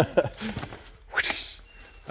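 A man's laughter trailing off, followed by two short breathy exhalations, the second a little after a second in.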